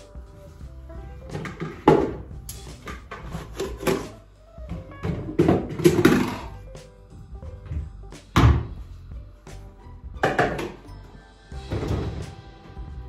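Kitchenware knocked and clattered as it is handled around a sink and counter, over background music. A run of separate knocks, with the sharpest about two seconds in and a little past the middle, and a longer spell of clatter in the middle.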